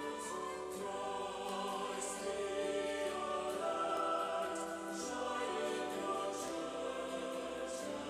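A choir singing a slow hymn in long, sustained notes.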